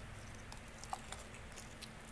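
A man chewing a bite of fried chicken drumstick: faint mouth sounds with a few soft clicks.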